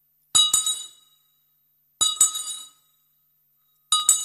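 Small brass handbell rung three times, about two seconds apart. Each swing gives two quick clapper strikes and a bright ring that dies away within about half a second.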